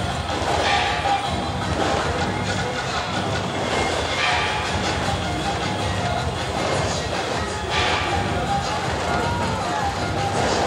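Dense, loud din of a temple procession: music with a steady high tone over continuous noise, mixed with crowd voices, and a brighter clash flaring up about every three and a half seconds.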